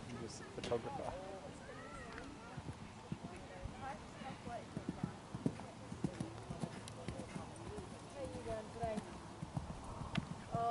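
Hoofbeats of a horse cantering on grass turf: an uneven run of dull thuds, with faint voices in the background.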